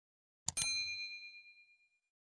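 Subscribe-button animation sound effect: a mouse click about half a second in, followed at once by a bright notification-bell ding that rings on in a few clear high tones for about a second and a half.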